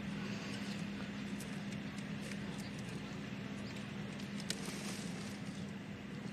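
Quiet outdoor background: a steady low hum under a faint hiss, with a few faint, sharp clicks scattered through it.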